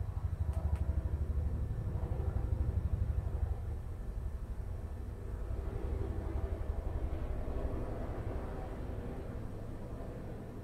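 A low, fluttering rumble, louder for the first few seconds and easing off after.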